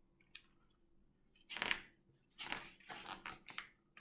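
Pages of a hardcover picture book being handled and turned: a faint tick, then a short rustle and, in the second half, a run of crackling paper sounds.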